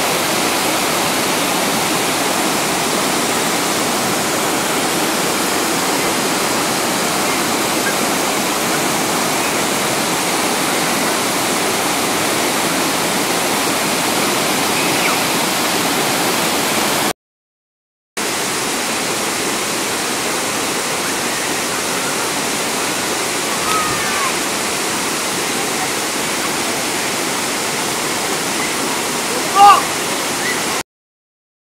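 Steady rushing of a rocky jungle river and waterfall, with faint voices now and then. The sound drops out for about a second just past halfway, and a brief louder sound comes near the end.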